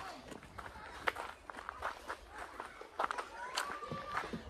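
Footsteps of a person walking on a dry dirt path, a few irregular steps, with faint voices in the background.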